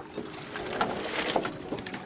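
Bay water lapping and splashing irregularly against the floats of floating oyster cages.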